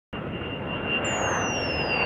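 Jet airliner engine sound effect: a steady rush of engine noise with a high whine that comes in about a second in and slowly falls in pitch.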